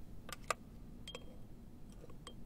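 A few faint clicks and a light clink as a wooden brush taps and stirs in a small porcelain dish of red ink.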